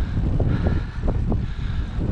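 Wind buffeting the microphone of a camera on a moving road bike in a gusty headwind: a loud, unsteady low rumble.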